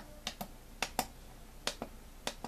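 Push buttons on a Tenergy TB6B hobby charger being pressed to step through its menus: about seven short, sharp clicks at uneven spacing.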